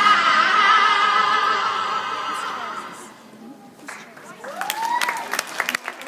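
A recorded song with a sung note fading out as the dance ends. After a short lull, an audience starts whooping and clapping in the last two seconds.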